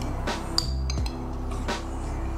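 A single glass clink with a short high ring about half a second in, a glass container knocking against a glass mixing bowl while melted butter is poured. Lo-fi background music with a steady beat plays under it.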